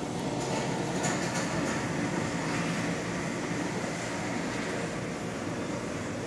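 Steady room noise inside an ice-cream shop, an even rumble and hiss, with a few faint clicks about a second in.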